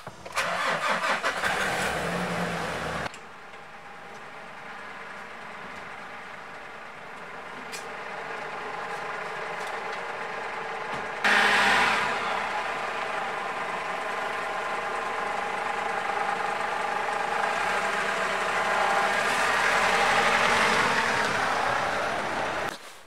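Nissan Navara's 2.5-litre dCi turbodiesel being cranked and started, then running. Its sound changes abruptly about three and eleven seconds in and grows louder toward the end.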